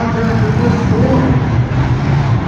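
Engines of several demolition derby cars running and revving, loud and steady.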